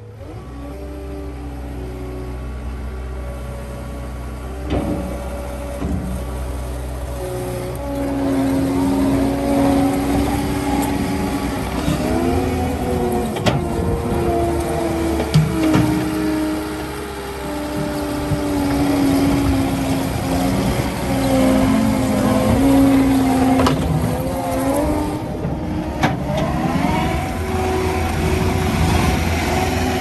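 Caterpillar 299D3 XE compact track loader's diesel engine running steadily. From about eight seconds in the loader drives on its rubber tracks, adding a whine that rises and falls as it moves and turns, with a few sharp knocks.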